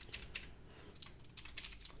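Faint keystrokes on a computer keyboard: a handful of separate key clicks, several bunched together in the second half.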